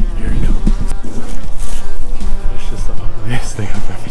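Wind buffeting an outdoor handheld camera microphone in loud, uneven low rumbles.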